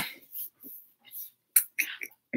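A woman laughing softly under her breath: a run of short breathy puffs with a small mouth click partway through.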